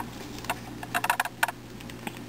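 A 3x3x3 Rubik's cube being turned by hand: its plastic layers click and clack in an irregular run of quick twists.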